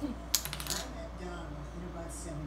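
A sharp click about a third of a second in, then a quick run of lighter clicks and taps from small hard objects.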